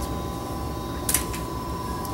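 Room tone in a small room: a steady low hum with a thin steady high tone, and one short hiss about a second in.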